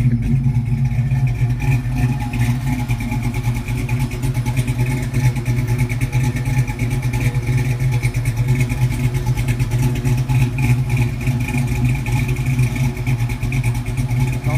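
LS V8 in a GM G-body idling steadily through an X-pipe exhaust, with no revving. A thin steady high whistle runs over the idle.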